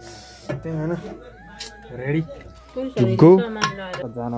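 A man's voice speaking in short phrases, with a louder stretch about three seconds in.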